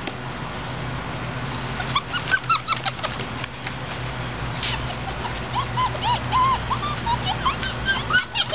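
Borador puppies whimpering and yipping in short, high-pitched cries: a quick cluster about two seconds in, then a steadier string of whines through the second half.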